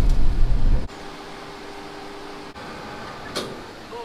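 Low rumble of a moving cable trolley heard from inside its cabin, cutting off abruptly under a second in. After that only a faint steady hiss with a faint hum, and a brief short sound near the end.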